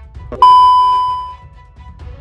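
A single sudden bright bell-like ding about half a second in, ringing and fading away over about a second, over steady background music with a low pulsing beat.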